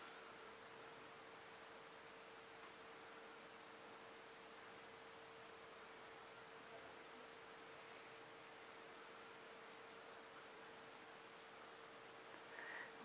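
Near silence: room tone, a steady hiss with a faint low hum.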